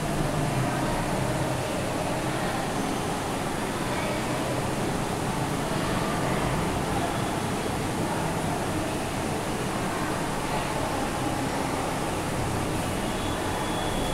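Steady background hiss at an even level throughout, with no distinct events.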